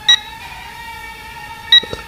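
VK330 micro foldable drone hovering with a steady whine from its motors and propellers, while the controller gives two short, loud beeps about a second and a half apart. The beeps are the low-voltage warning: the drone's battery is nearly flat.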